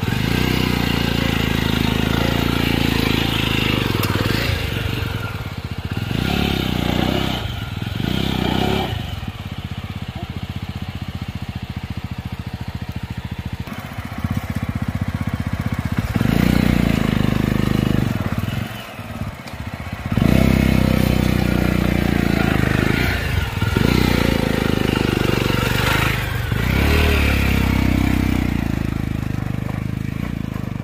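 Jawa 42 motorcycle's single-cylinder engine pulling at low speed through deep mud ruts. The engine note rises and falls as the throttle is opened and closed, with a few brief dips as the rider eases off.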